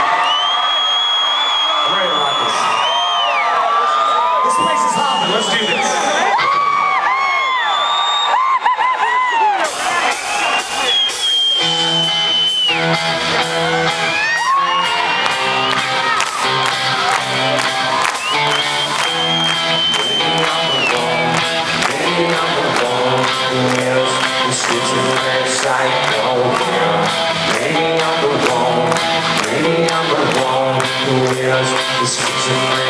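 A crowd at a live rock concert cheers and whoops for about the first ten seconds. Then drums and cymbals come in, and the full band starts a rock song with electric guitar, bass and a steady drum beat.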